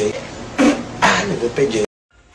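A man's voice making vocal sounds without clear words. It cuts off suddenly near the end.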